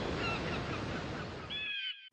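Surf washing onto a beach with gulls calling over it: a few short, faint calls early, then a clearer, drawn-out call near the end before the sound cuts off suddenly.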